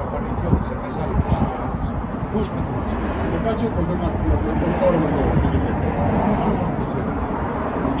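Steady city road traffic noise, a low rumble with hiss, with a few faint words of speech in the middle.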